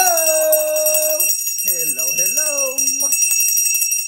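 Small brass hand bell rung rapidly and continuously, its clapper striking many times a second over a steady high ring.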